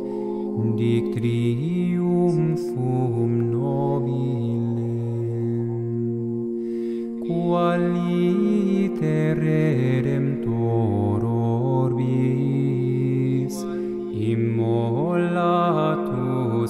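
Latin hymn chanted by a vocal ensemble over a steady held drone. A lower voice moves step by step beneath, and the higher voices rise and fall in melismatic phrases.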